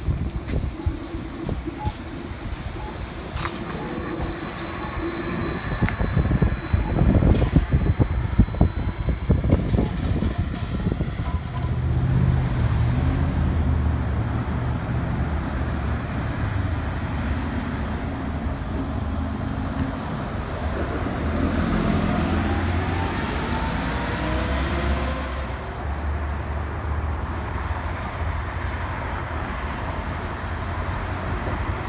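MBTA city buses passing in street traffic. An electric trolleybus goes by close with a high steady whine, then a bus runs with a steady low hum and a rising whine as it accelerates.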